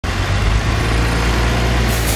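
Articulated city bus's engine running with a steady low drone as the bus drives and turns, with road noise over it.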